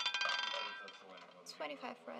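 Roulette ball clattering over the wheel's pocket dividers: rapid clinks that die away within the first second as it settles into a pocket.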